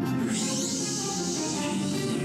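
Music playing through a Bose Wave Music System IV tabletop speaker that has been turned up loud, with steady sustained notes and a bright hiss-like wash over the top starting about a third of a second in.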